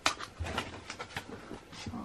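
Paper and plastic packaging being handled: a sharp snap at the start, then a quick run of crinkling, crackling rustles as a kraft-paper envelope is picked up.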